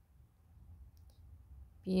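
Stylus drawing on a tablet's glass screen, giving a couple of faint short clicks about halfway through over a low steady hum.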